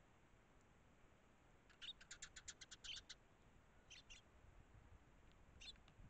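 Eurasian tree sparrows chirping: a quick run of about ten short chirps starting about two seconds in, then two more chirps, and a single one near the end.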